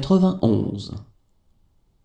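Speech only: a man's voice speaks one short French number word, about a second long.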